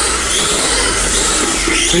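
GLR mini RC car with a 3500kV brushless motor lapping a tiled track: a steady motor whine and tyre noise that waver slightly in pitch with the throttle.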